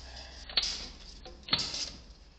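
Two sharp clicks, one about half a second in and another about a second later, with a fainter tick between them.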